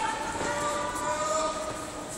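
Long, drawn-out kiai shouts from karate fighters squaring off, two voices overlapping, each held on a steady pitch for about a second, fading toward the end.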